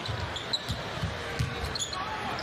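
Basketball being dribbled on a hardwood arena court: several short low bounces in the first second and a half, over steady arena noise.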